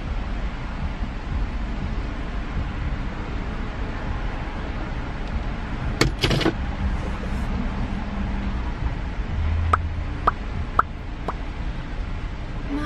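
Car engine idling with a steady low rumble, heard from inside the cabin, with a single knock about halfway and four sharp clicks about half a second apart near the end.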